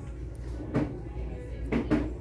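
A few short, soft knocks from hands handling a shelf display, about three-quarters of a second in and again near the end. Under them are faint shop background music and a low steady hum.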